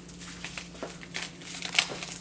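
Wrapping paper on a small gift crinkling as it is handled and pulled from a fabric advent calendar pocket: an irregular scatter of short crackles, with a sharper one near the end. A steady low hum runs underneath.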